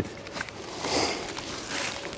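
Hand-held trigger spray bottle squirting onto a doe decoy: two short hisses, about a second in and near the end, over rustling of leaves and clothing.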